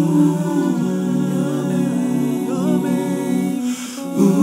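Multitracked a cappella vocals by one male singer: layered voices hold sustained wordless chords. About two-thirds of the way through, a higher voice bends through a short melodic run, and a brief breathy hiss comes just before the end.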